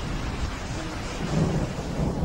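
Steady hiss of rain with a low rumble of thunder, which grows louder about a second and a half in.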